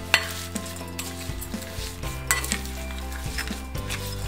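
Serving utensil tossing a dressed lamb's lettuce salad in a glass bowl: leaves rustling and the utensil clicking sharply against the glass a few times.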